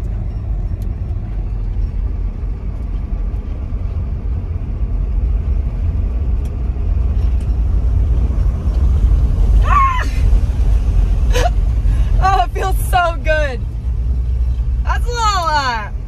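Wind rushing and buffeting through the open windows of a moving Chevrolet Suburban, over steady low road rumble, with a hiss that grows louder about halfway through. In the second half a woman gives several short, high-pitched vocal exclamations.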